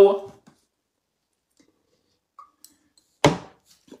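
A single sharp thump about three seconds in, in an otherwise near-silent pause between spoken phrases.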